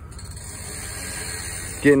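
A steady hiss that grows slightly louder, with no distinct knocks or tones in it.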